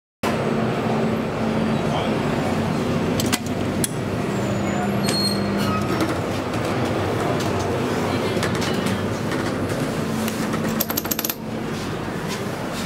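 Steady railway-station background noise with a low hum. Sharp metallic clicks come now and then, and a quick run of clicks and rattles follows near the end.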